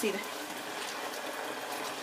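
Cubed chicken breast sizzling in hot oil and marinade juice in a frying pan, a steady hiss with small scattered pops, as the pieces are stirred with a spoon.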